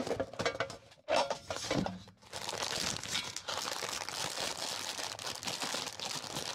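A plastic storage case handled and opened, with a few clicks and knocks in the first two seconds. Then a steady crinkling as fingers rifle through tightly packed clear plastic sleeves of stickers.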